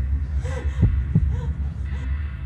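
Suspense underscore: a steady low throbbing drone with heartbeat-like thumps, two of them close together around a second in.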